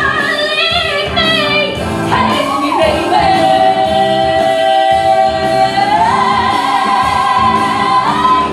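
Two female voices singing a stage-musical duet over band accompaniment. About three seconds in they hold one long note, which steps up higher at about six seconds and is held on.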